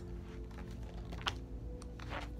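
Faint handling of a picture book: a few sharp clicks and light rustling as it is moved and its page is turned.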